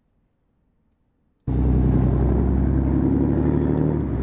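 After near silence, a motor vehicle's engine suddenly comes in about a second and a half in: a loud, steady low rumble of street traffic close to the recording phone.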